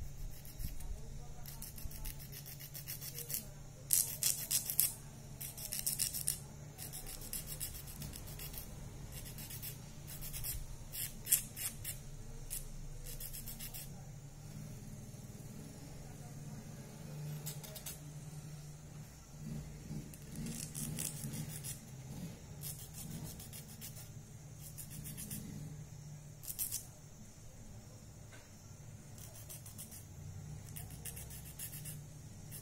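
A nail file rasping against natural fingernails in short bursts of quick back-and-forth strokes with pauses between, shaping the nails square.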